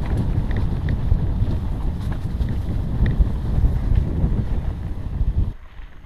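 Wind buffeting a camera microphone on a moving mountain bike, a loud low rumble with a few light clicks through it. It cuts off suddenly near the end.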